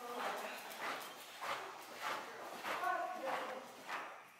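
Horse cantering on soft arena footing: dull hoofbeats in a steady rhythm, a stride about every half second or a little more.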